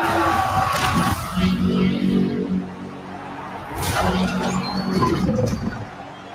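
Film trailer soundtrack playing: dramatic score with two heavy hits, about three seconds apart, each followed by a deep held swell.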